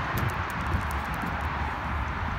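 Wind rumbling on a handheld phone microphone, with a few footsteps on concrete in the first second.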